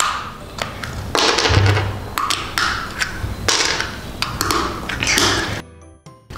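The brittle shell of a toy dinosaur surprise egg being cracked and picked away by hand: crackling and scraping in short repeated bursts, with small sharp clicks between them as pieces break off.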